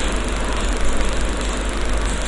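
Bitter gourd pieces sizzling as they fry in hot oil in an aluminium kadai, a steady hiss with a low hum underneath.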